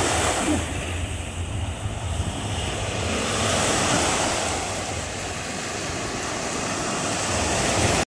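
Small sea waves breaking and washing up a sandy beach in a steady wash of surf, swelling and easing, with wind rumbling on the microphone.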